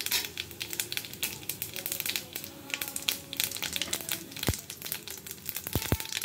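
Cumin seeds crackling in hot oil as they temper, a dense run of small irregular pops with a few sharper ticks near the end.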